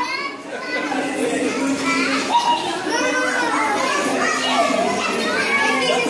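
A group of young children playing, many high voices overlapping as they call out and chatter excitedly.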